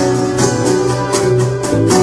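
Live-looped acoustic guitar strumming in an even rhythm over a steady low bass line, an instrumental stretch with no singing.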